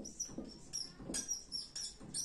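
Marker squeaking on a whiteboard as words are written: a quick run of short, high-pitched squeaks, one with each pen stroke.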